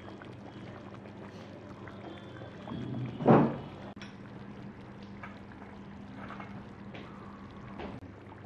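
Hot pot broth simmering in the pot, a steady liquid bubbling over a low steady hum. A short, loud sound breaks in a little over three seconds in.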